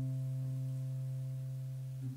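Acoustic guitar's final chord ringing out, a few sustained notes fading slowly and evenly at the close of the song.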